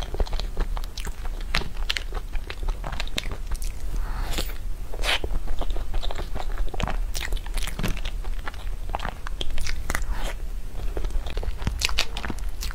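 Close-miked mouth sounds of eating a soft taro-cream sponge cake: chewing with many small, irregular wet clicks and smacks, over a steady low hum.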